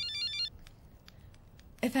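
Mobile phone ringtone: a quick melody of short electronic beeps that cuts off about half a second in as the call is answered.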